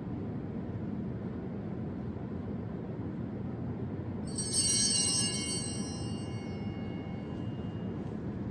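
Altar bells rung once about halfway through, a bright shimmer of high ringing tones that starts suddenly and rings out over about three seconds. A steady low hum of room noise lies under it throughout.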